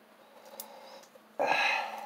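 Faint clicks of small magnetic beads as a strung bead bracelet is wound around a wrist, then a short breathy "uh" from the man about one and a half seconds in.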